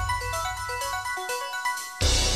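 Electronic station-ident jingle: quick, bright, chime-like notes stepping up and down in a melody over a low bass that fades away toward the end.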